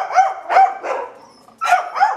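Small white dog barking in quick, high-pitched yaps: three in a row, a short pause, then two more near the end. It is excited and barking up at a cat sitting on the wall above.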